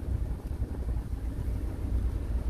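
Steady low rumble from a running Renault Scénic, with no distinct knocks or rhythm.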